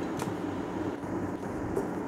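Steady low background noise with a couple of faint, light clicks.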